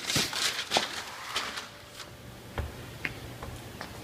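A large sheet of print paper rustling as it is lifted and flipped over by hand, the rustle fading after about a second and a half. Scattered light taps and clicks follow.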